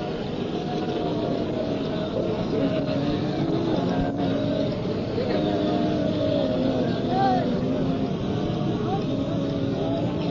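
Several voices at once, held and drawn out, wavering in pitch, over a steady background noise.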